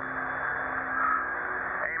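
Two-way radio channel left open between transmissions: steady static hiss with a faint low hum, cut off above the upper midrange like the radio voices. A voice on the radio comes in right at the end.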